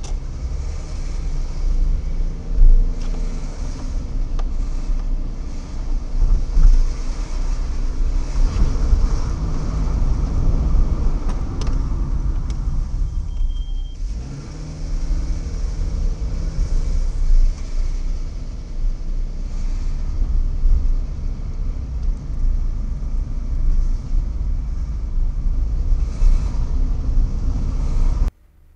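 A car driving slowly, heard from inside the cabin: the engine runs under a steady low road rumble, with a short high beep about halfway through.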